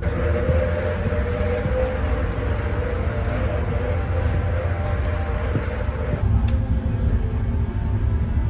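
Running noise inside a moving passenger train: a steady low rumble of the wheels on the track, with a steady hum over it.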